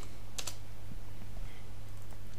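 A few keystrokes on a computer keyboard: two sharp clicks close together about half a second in, then a few fainter taps, over a steady low hum.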